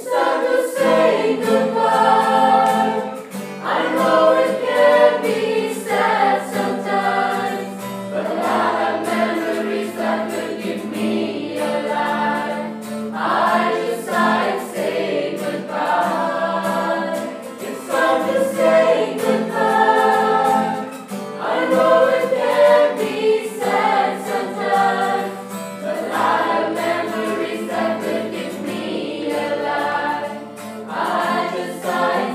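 A group of male and female voices singing a slow farewell song together, phrase by phrase, over a steady held accompaniment note.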